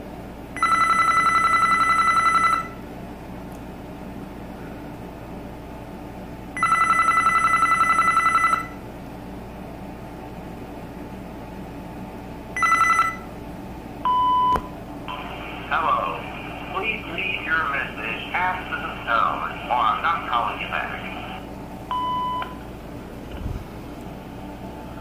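BellSouth MH9934BK cordless phone's electronic ringer warbling in two rings of about two seconds each, then a third ring cut short as the answering system picks up. A beep follows, then a short recorded greeting that sounds thin, like a voice over a phone line, and a second beep to start recording.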